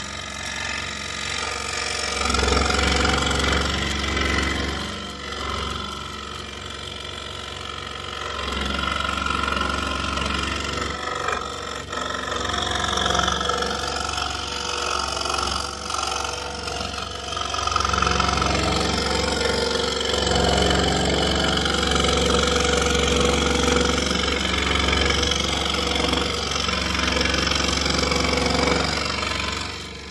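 Pégas scroll saw running, its reciprocating blade cutting through 3/4-inch plywood, with a steady low motor hum. The sound grows louder and softer several times as the cut goes on.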